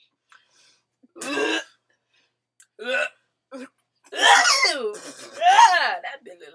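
A person coughing and clearing his throat in short bursts, then two loud drawn-out vocal cries with wavering pitch near the end: his reaction to a mouthful of extremely sour Warheads candies.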